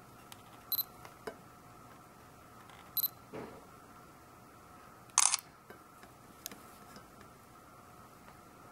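A digital camera's quick double focus beep, sounding twice about two seconds apart, then a sharp shutter click about five seconds in, with a few faint handling clicks over a faint steady hum.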